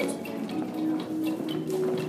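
Square-dance music playing with steady held notes, with faint taps of dancers' feet stepping on a wooden floor.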